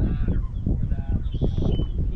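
Wind rumbling on the microphone, with short bird calls: one near the start and a thin, high call about one and a half seconds in.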